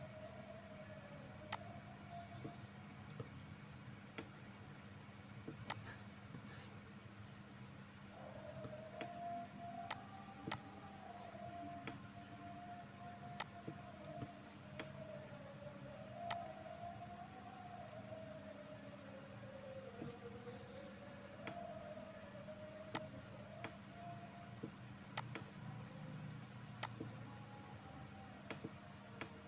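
Faint computer mouse clicks, single sharp clicks every one to three seconds, over a steady low hum; a faint wavering drone comes in about eight seconds in and fades near the end.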